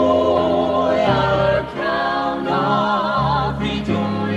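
Southern gospel quartet of mixed male and female voices singing in close harmony, holding long notes with vibrato over a steady bass line. The backing is bass guitar and keyboards.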